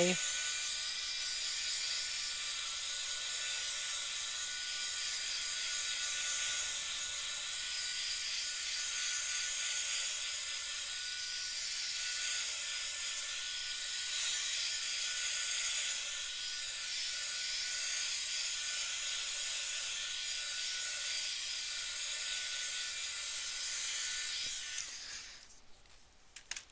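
Small handheld craft dryer running steadily, a whirring fan noise with a faint high whine, drying fresh Crayola marker ink on a sketchbook page; it switches off near the end.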